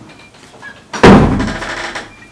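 A door slamming shut: one sudden loud bang about a second in, dying away over most of a second.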